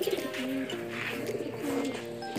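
Racing pigeons cooing in the loft, low gliding coos under background music.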